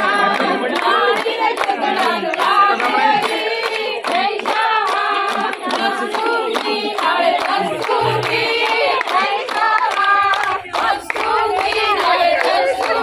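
A group of women singing Punjabi boliyan (folk couplets) together, with rhythmic hand-clapping keeping time.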